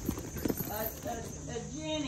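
Indistinct voice in the background with a few sharp knocks or taps, two of them near the start.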